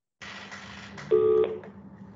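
An open microphone on a video call cuts in with a steady hiss and low hum, and about a second in a short electronic beep of a few steady tones sounds for under half a second.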